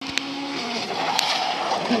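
A rally car's engine in the distance, holding a steady note and then dropping in pitch, over the chatter of a spectator crowd.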